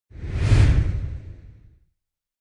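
Logo-intro whoosh sound effect with a deep low rumble, swelling up within the first half-second and fading away before two seconds.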